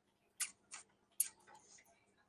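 Three short, sharp clicks about a third to half a second apart, followed by a few fainter ticks.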